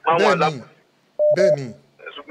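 A man's voice in two short bursts, with a short steady electronic beep, broken once, about a second in, like a telephone keypad tone.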